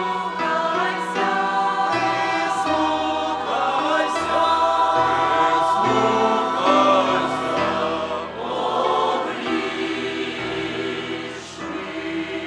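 Mixed church choir singing a sacred song in sustained, full chords, the voices moving together from chord to chord.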